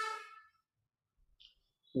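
A man's voice trailing off on a held syllable, then about a second and a half of near silence, with speech starting again at the very end: a pause in a talk heard over a video call.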